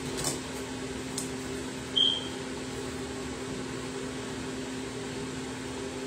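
Steady low hum of a running appliance, with one short high beep about two seconds in and a couple of faint clicks before it.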